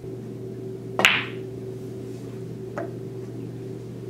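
Cue stroke driving the cue ball into a frozen two-ball pool combination: one sharp click of balls colliding, with a short bright ring. A fainter single click follows nearly two seconds later.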